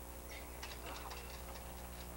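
A quick run of light clicks and taps lasting about a second and a half, over a steady low hum.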